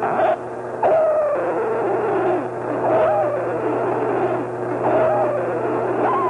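Electronic music: a steady low drone under a wailing, voice-like tone that glides downward, starting again about every two seconds. The sound drops away briefly near the start, then returns.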